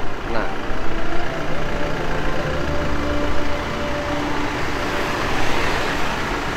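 Road traffic passing: a motor vehicle's engine hum with a low rumble building through the middle, then tyre noise swelling near the end.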